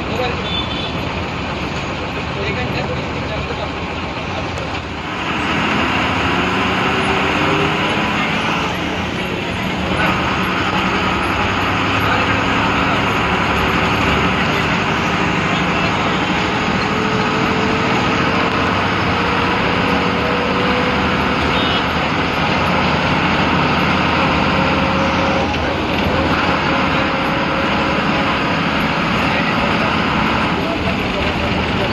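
Ashok Leyland MSRTC bus's diesel engine heard from inside the cabin, pulling along the highway; it grows louder about five seconds in and its pitch then climbs slowly as the bus gathers speed.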